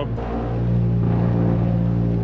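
A car's engine and exhaust droning steadily while driving, heard inside the cabin, the low hum growing a little louder about half a second in.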